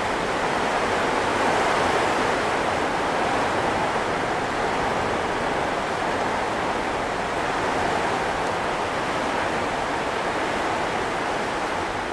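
A flooded gully: a loud, steady rushing roar of water, rumbling like thunder.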